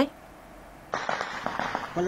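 Distant gunfire heard as a dense crackle of sharp pops, starting about a second in after a quiet start.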